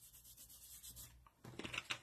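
Faint rubbing of fingers smoothing a glued sheet of patterned paper down onto card, followed by light, scratchy paper handling near the end.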